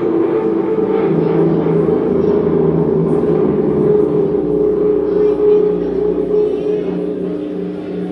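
Live electric guitar and drums: the guitar, played through effects pedals, holds sustained, overlapping notes over light drumming, and the sound slowly eases down over the last few seconds.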